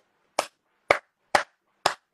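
Four sharp hand claps, evenly spaced at about two a second.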